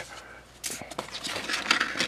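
Sheets of 400-grit sandpaper rustling and sliding against each other as they are sorted and pulled from a drawer, starting about half a second in.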